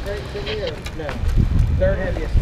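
Indistinct talking over a low wind rumble on the microphone that grows stronger in the second half.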